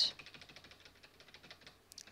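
Computer keyboard clicking in a fast run of faint, even key presses as drawn strokes are undone one after another.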